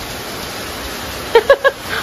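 Steady heavy rain falling on paving and a corrugated carport roof, heard as an even hiss. About one and a half seconds in, a quick run of four short vocal sounds cuts through the rain.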